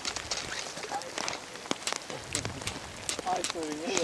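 Irregular sharp taps and clicks, several a second, with a man's voice murmuring briefly near the end.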